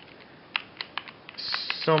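Light plastic-and-metal clicks and ticks, several a second, from an old Black & Decker KS888E jigsaw as its blade and blade holder are rocked by hand. A brief hiss comes about a second and a half in.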